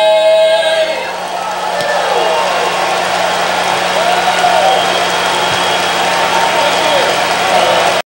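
An all-male a cappella barbershop quartet's final held chord ends about a second in, then a live audience applauds and cheers.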